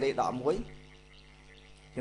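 A man's voice lecturing in Khmer in short phrases, trailing off about half a second in. A pause with a faint steady electrical hum follows, and speech starts again at the very end.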